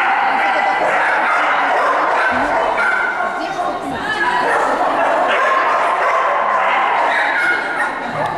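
A dog barking and yipping repeatedly, over a steady mix of indistinct voices.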